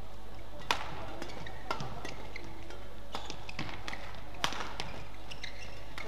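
Rackets striking a shuttlecock during a badminton rally: sharp cracks, the two loudest about a second in and near four and a half seconds, with lighter knocks between them from the players' feet on the court.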